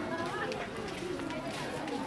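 Indistinct voices of people talking around a busy market stall, with faint small clicks mixed in.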